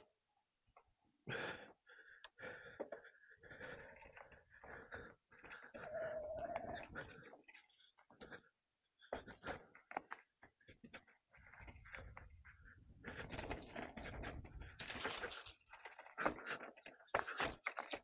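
A mountain-bike rider breathing hard and panting while pedalling, with short knocks and rattles from the bike over rough singletrack and a louder rush of noise about three-quarters of the way through.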